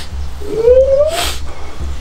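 A single drawn-out, voice-like call that rises in pitch for most of a second and ends in a short breathy rush.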